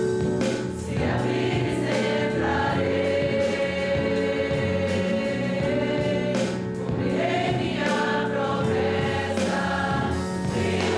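A group of voices singing a hymn together with instrumental accompaniment, the notes held long and the singing unbroken throughout.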